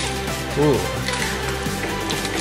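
Background music with steady held notes, and a short "ooh" from a voice.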